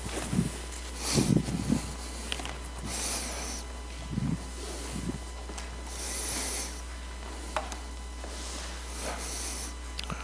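Hushed hall with people moving: scattered rustling and a few soft low thumps, over a steady low electrical hum.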